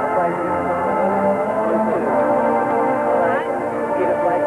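High school marching band playing sustained brass and woodwind chords over front-ensemble percussion.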